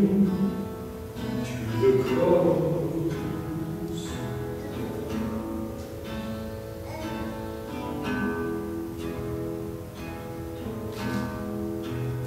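Acoustic guitar played solo, a run of plucked notes and chords with no singing.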